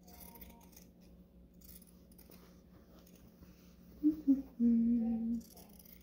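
Pinking shears cutting through fabric in faint, scattered snips, then a woman humming a few notes about four seconds in.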